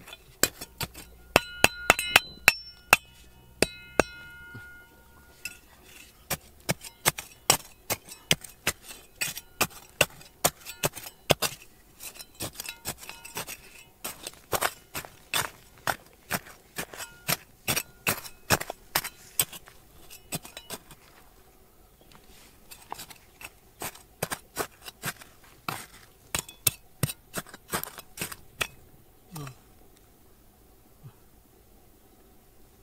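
Small steel hand trowel scraping and striking dry, gravelly soil and stones: a steady run of sharp clinks, a few each second. Several strikes in the first seconds ring on briefly with a metallic tone, and the clinking stops for a moment a little past the middle.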